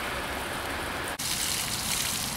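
A steady hiss over the snowy street, cutting abruptly about a second in to water pouring off the rim of an inverted-pyramid fountain and splashing into its basin, a brighter, hissier spray.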